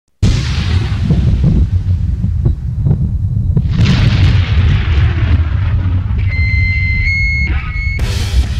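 A sudden deep rumbling boom with a steady low rumble beneath it, a second noisy swell about four seconds in, and a steady high-pitched electronic tone joining for the last couple of seconds.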